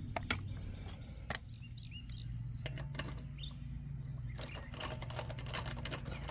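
Scattered metallic clicks of hand tools being handled, thickening into a quick run of clicks near the end as a worn Snap-on ratchet and socket are fitted onto a lug nut. Birds chirp faintly now and then over a steady low hum.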